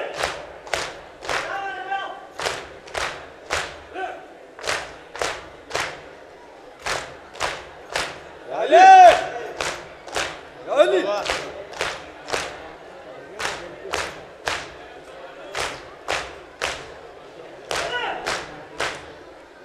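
Group of mourners doing matam, striking their chests with open hands in unison: a steady, even slapping about twice a second. Loud voices call out over the beat about nine and eleven seconds in.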